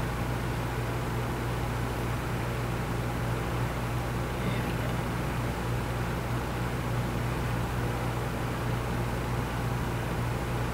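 Steady background hum with an even hiss, unchanging throughout: room noise such as a fan or air-handling system.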